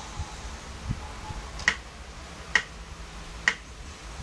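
Three sharp count-in clicks, evenly spaced a little under a second apart, starting about one and a half seconds in.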